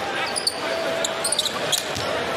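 A basketball being dribbled on the hardwood court over the steady noise of an arena crowd, with a few short sharp knocks and squeaks.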